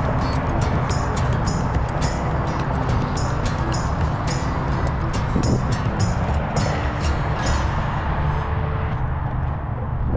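Heavy interstate traffic on the I-65 bridges overhead: a loud, steady rush of tyres and engines. Over the top runs a rapid series of light ticks that stops near the end.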